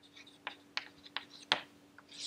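Chalk writing on a chalkboard: a run of short, sharp taps and clicks as the letters are formed, the loudest about one and a half seconds in, over a faint steady hum.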